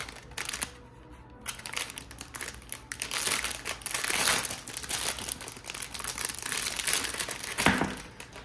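Clear plastic bag crinkling and rustling as it is handled and unwrapped, with a brief lull about a second in and the sharpest crinkle just before the end.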